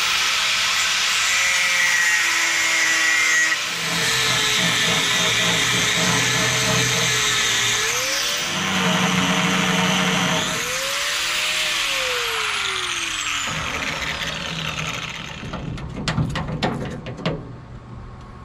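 Angle grinder with a cut-off wheel cutting through the steel tailgate hinge of a truck service bed. Its whine dips in pitch as the wheel bites and recovers between cuts, then winds down after about 14 seconds. A few sharp metal knocks follow near the end.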